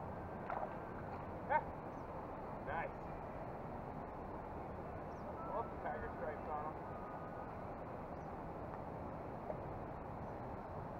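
Faint, steady outdoor background noise with a few brief, faint voice sounds, short murmurs or exclamations, scattered through the first seven seconds.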